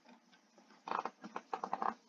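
A person's voice, fairly faint, in a quick run of short bursts starting about a second in.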